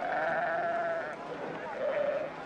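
Sheep bleating: one long, wavering bleat lasting about a second, then a shorter, fainter bleat near the end.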